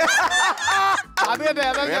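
People talking and laughing, with a short pause about a second in.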